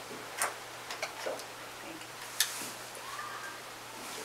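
A few small sharp clicks in a quiet room over a faint steady low hum, the sharpest about two and a half seconds in, with a brief spoken "thank you".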